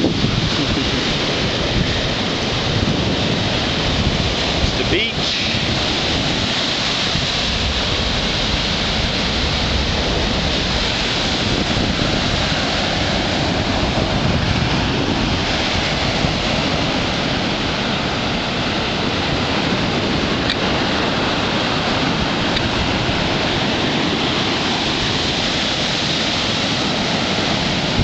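Heavy high-tide surf breaking on a sandy beach: a steady, unbroken rush of waves and foam, with wind buffeting the microphone.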